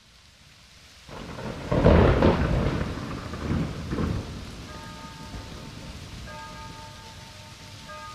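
Thunderstorm: a rain hiss swells in, and a loud thunderclap about two seconds in rolls off with further rumbles. Steady rain follows, with faint held musical tones coming in about halfway through.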